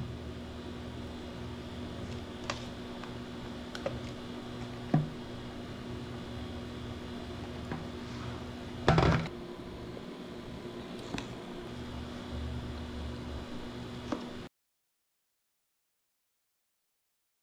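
A blender pitcher and plastic cups being handled: a few light clicks and one louder knock about nine seconds in, over a steady faint hum. The sound cuts off abruptly near the end.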